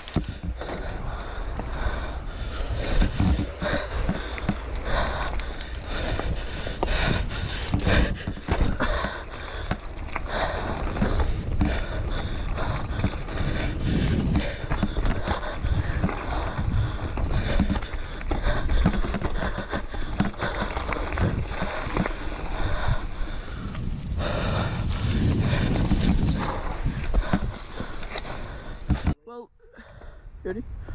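Mountain bike riding fast down a rough forest dirt trail: a continuous rumble of tyres on dirt, with frequent knocks and rattles as the bike goes over bumps and roots. The sound breaks off abruptly about a second before the end.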